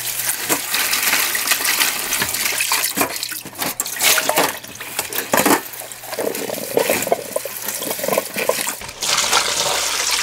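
Tap water running and splashing into a stainless steel sink and bowl while green onion stalks and leaves are rinsed and rubbed by hand. The splashing comes in many short, uneven strokes, with a steadier stream at the start and again near the end.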